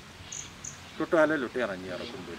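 Two short, high chirps from a cricket, about a third of a second apart, followed from about a second in by a man's voice speaking, which is the louder sound.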